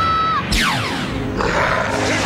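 Dramatic TV-drama soundtrack: a held musical note breaks off about half a second in, giving way to a sound effect sweeping down in pitch, then a rush of noise builds near the end.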